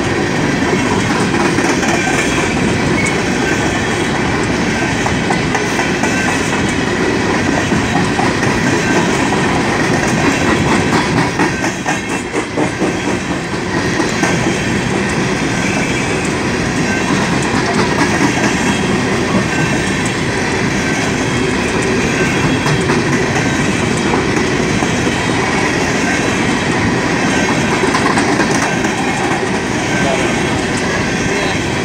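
Coal train's freight cars rolling past at close range: a steady rumble of steel wheels on rail with clickety-clack from the wheels over the track. It is briefly softer about twelve seconds in.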